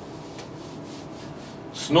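Soft rubbing and scratching against a paper sheet, a steady low hiss with faint irregular scratchy strokes, before a man's voice starts near the end.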